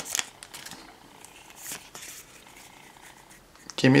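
Quiet handling of a freshly opened stack of Pokémon trading cards and its foil booster wrapper: faint light ticks as the cards are shifted in the hands, with a short rustle about one and a half seconds in.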